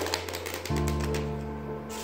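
A deck of playing cards being riffle-shuffled: a fast run of flicking clicks lasting under a second, then a few fainter flicks, over background music with steady held notes.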